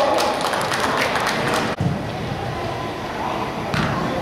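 A player's shout ends about half a second in, then thuds of a soccer ball being kicked and more distant voices, all echoing in a large indoor hall; the sound drops out abruptly for an instant just under two seconds in.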